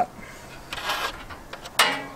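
Soft handling rustle, then a single sharp light click near the end as a thermometer probe is set down on the smoker's metal grill grate.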